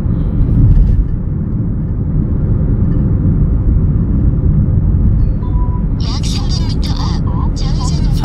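Steady low road and engine rumble inside the cabin of a moving Chevrolet car cruising at road speed, swelling briefly about a second in. About six seconds in, a voice starts speaking over it.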